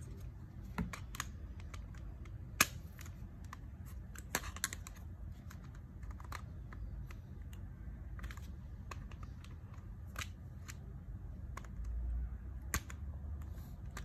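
Scattered light plastic clicks and taps as a three-pole miniature circuit breaker is turned over and handled, over a low steady hum.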